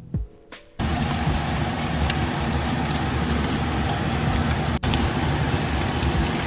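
Scallops searing in hot oil in a nonstick pan: a loud, even sizzle with crackling that starts abruptly about a second in, after a few moments of music.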